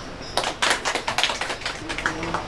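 A small group of people clapping, starting about a third of a second in: a scattered patter of individual claps rather than full applause.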